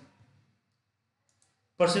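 Near silence between spoken phrases, broken by a faint computer mouse click about one and a half seconds in.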